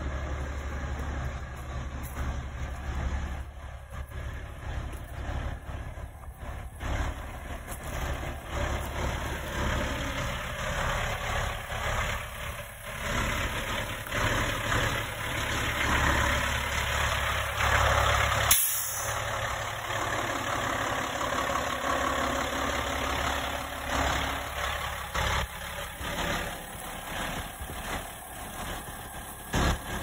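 A heavy truck's diesel engine running steadily at idle, with one short, sharp hiss about two-thirds of the way through.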